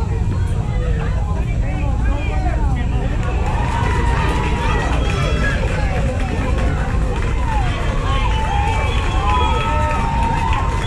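Many people calling out and chattering over one another, getting louder and busier from about three seconds in, over a steady low rumble.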